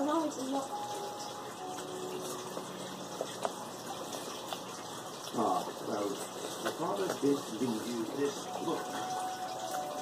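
A man's muffled humming and murmuring with his mouth full while eating cut fruit by hand, over a low steady hiss. The voice sounds come in the second half.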